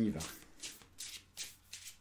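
A deck of oracle cards shuffled by hand, the cards sliding against each other in a quick run of soft swishes, about three a second.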